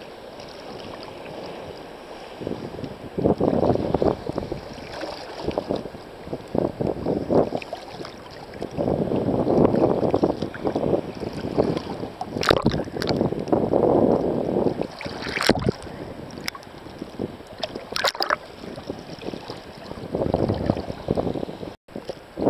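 Sea water sloshing and splashing around a camera held at the water surface by a swimmer, in irregular surges every few seconds, with a few sharp splashes in the second half. The sound cuts out briefly near the end.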